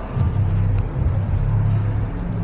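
Street traffic on a city avenue: a steady low rumble of vehicles.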